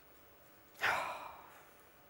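A single audible sigh, one breath out starting about three quarters of a second in and fading away within a second.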